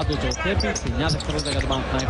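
Basketball game sound on an indoor court: the ball bouncing on the hardwood floor, with short high squeaks of players' shoes, under a commentator's voice.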